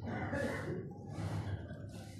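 A man's breath drawn in through the microphone in the pause between slowly chanted phrases of an Arabic sermon opening.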